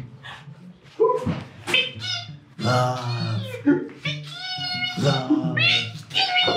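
A person's wordless vocal sounds, a few short ones and then longer ones whose pitch bends up and down, over soft background music with a steady low tone.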